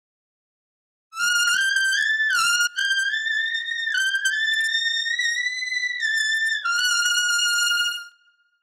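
Solo trumpet playing in the range above double high C: a slurred stepwise run starting about a second in, climbing note by note and coming back down to the starting note, with a brief break about a third of the way through. This is the upper-register exercise on the printed sheet, G up to D and back to G above double high C.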